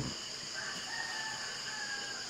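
A rooster crowing once, faint and drawn out for over a second, over a steady high chirring of crickets.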